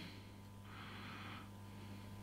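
Quiet room tone with a faint steady low hum, and a soft hiss lasting just under a second about half a second in.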